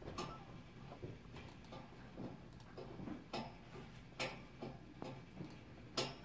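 Faint, irregular clicking of a computer keyboard and mouse, a few clicks a second with uneven gaps.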